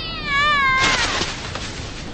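A drawn-out, high, wavering cry lasting about a second and falling slightly in pitch. Near its end it is overlapped by a short, loud burst of noise.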